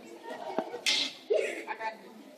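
Brief, scattered children's voices with a sharp smack about a second in; the string orchestra is not playing.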